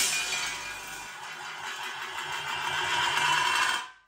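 A sudden crash of something dropped, then a long ringing, rattling decay as it settles. The decay cuts off abruptly near the end.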